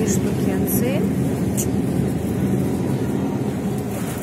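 Steady low rumble and hiss of supermarket background noise at a refrigerated meat case.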